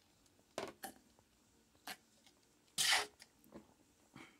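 A few short mouth sounds of a person sipping milk from a plastic cup and swallowing, with a louder hissing breath-like burst about three seconds in.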